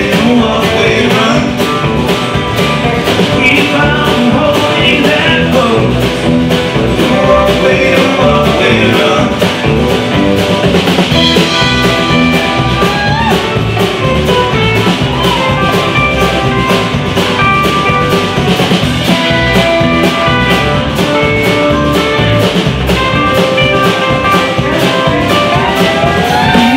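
A country-rock band playing live, heard from the audience: strummed acoustic guitars, bass and drum kit, with a lead line that slides between notes near the middle and some singing.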